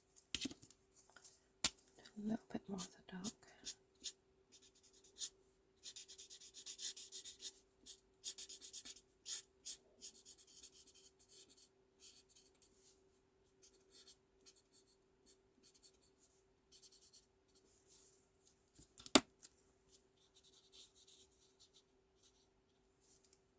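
Faint scratchy strokes of an alcohol marker nib sweeping colour over card stock, heaviest from about six to ten seconds in, with sharp clicks of marker caps being pulled off and pushed on; the loudest click is about nineteen seconds in.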